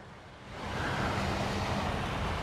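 Ocean surf rushing up the beach, swelling about half a second in to a steady wash, with some wind on the microphone.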